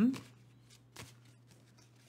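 Cards being handled quietly while the next oracle card is drawn, with one soft tap about a second in.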